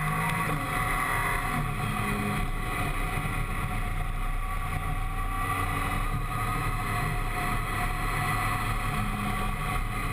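Triumph Tiger 955i's three-cylinder engine running on the move at a fairly steady engine speed, with wind noise on the microphone.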